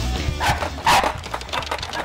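Punk rock music cuts off about half a second in; then a Boston terrier gives short barks, the loudest about a second in, followed by a quick run of light clicks.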